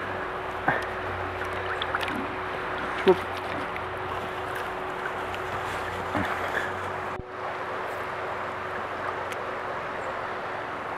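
Steady rushing of a small stream flowing over stones, with a short drop in the sound about seven seconds in.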